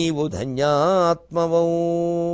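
A man chanting a verse in a sing-song melody, his voice rising and falling, then settling on one long held note about a second and a half in.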